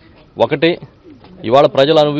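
Speech only: a man speaking in short phrases into news microphones, with a brief pause near the start.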